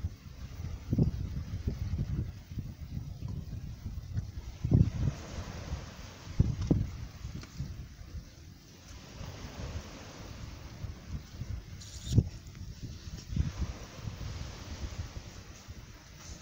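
Wind buffeting the microphone in irregular gusts, over a faint steady wash of calm sea at the edge of a shingle beach.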